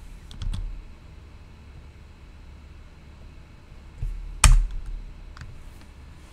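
Computer keyboard and mouse clicks: a few soft clicks near the start, one loud sharp click about four and a half seconds in, and a fainter one about a second later.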